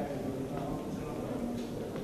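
Speech: a voice talking steadily.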